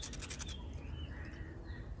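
A steel knife scraping and cutting a piece of cinnamon root, with a few quick scratchy strokes in the first half second. Faint bird chirps follow over a low outdoor rumble.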